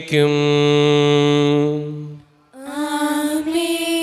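Sung liturgical chant: a man's voice holds one long note for about two seconds and stops, then after a short pause a higher voice comes in on another long held note.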